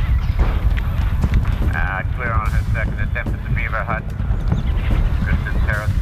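Wind buffeting the microphone in a steady low rumble, with a high, wavering call heard twice, once in the middle and again near the end.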